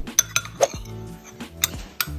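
A metal spoon clinking about four times against a ceramic bowl and plate as fajita filling is spooned onto tortillas, over background music.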